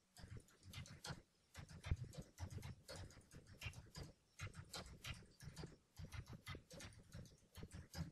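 Typing on a computer keyboard: a quick, irregular run of key clicks with brief pauses between words.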